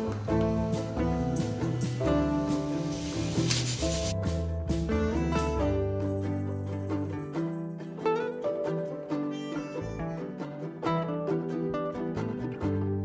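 Instrumental background music with plucked string notes.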